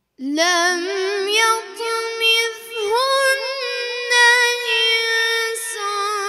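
A boy reciting the Quran in the melodic, chanted style, starting out of silence just after the beginning with long held notes that waver and turn in pitch, broken by short breaths.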